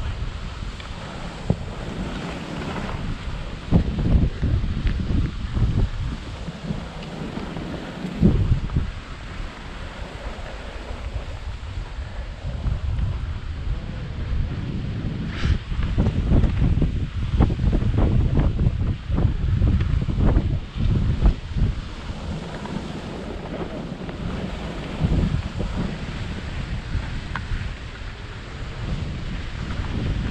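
Wind buffeting an action-camera microphone while skiing downhill, rising and falling in gusts, over the hiss of skis sliding on packed snow.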